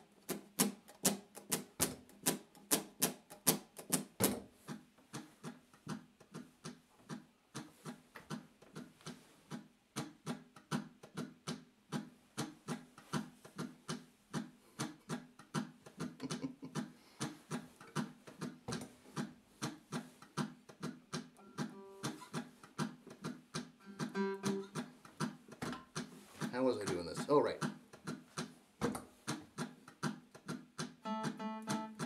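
Acoustic guitar picked as a song intro: a steady run of single notes and light strums, about three to four a second, strongest in the first few seconds. Near the end a few short held notes join in over it.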